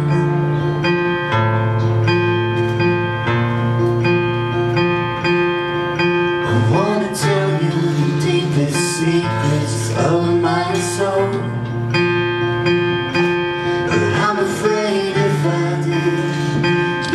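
A woman singing, accompanied by a cutaway steel-string acoustic guitar playing ringing chords; her sung phrases come in over the guitar several times.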